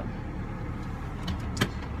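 Car engine idling, a steady low rumble heard from inside the cabin, with one sharp click about one and a half seconds in.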